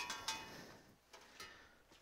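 Stainless-steel wire basket of an ultrasonic cleaner clinking against the steel tank as it is lifted out of the bath: a sharp metallic clink with a brief ring at the start, a second ringing knock just after, then a few faint taps.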